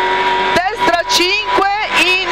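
Rover 216 rally car's engine heard from inside the cockpit, running at steady high revs under load. About half a second in, a voice calling over the engine joins it, most likely the co-driver reading pace notes.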